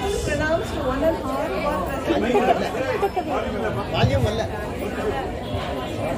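Several people talking at once in a hall: overlapping, indistinct chatter among a seated group.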